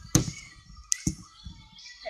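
Light handling knocks and clicks: a sharp knock just after the start and two more clicks about a second in, with quiet between.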